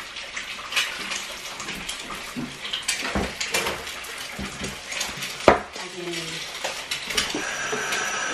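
Kitchen clatter of dishes and utensils being handled: scattered clinks and knocks, the loudest a sharp knock about five and a half seconds in.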